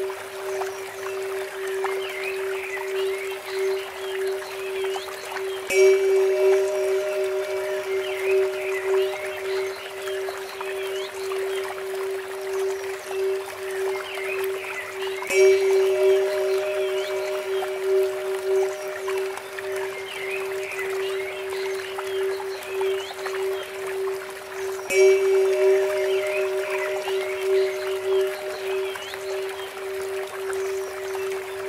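Relaxation soundscape: a steady 432 Hz drone with a Tibetan bell struck three times, about ten seconds apart, each strike ringing out with bright overtones. Birds chirp throughout over the trickle of a bamboo water fountain.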